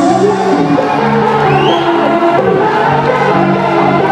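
Electronic dance music played loud over a club sound system, in a breakdown with sustained chords and almost no bass, with a rising sweep about one and a half seconds in. A crowd's voices are heard along with the music.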